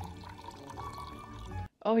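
Orange juice being poured from a pitcher through a strainer into a glass. The pouring runs steadily and then cuts off sharply near the end.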